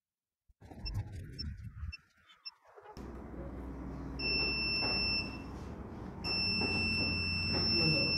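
Luminous home inverter's low-battery alarm buzzer, sounding because its battery is run down and the inverter is about to cut off. It gives a few short high beeps, then a one-second beep about four seconds in, then a long unbroken beep from about six seconds in, over a low hum.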